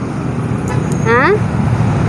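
Steady low rumble of road traffic, with a short rising vocal sound from a person about a second in.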